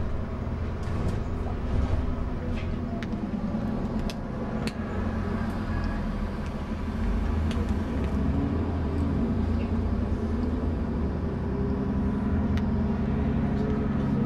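London double-decker bus's diesel engine running as the bus moves through traffic, heard from inside on the upper deck: a steady low rumble with a few sharp clicks and rattles scattered through it.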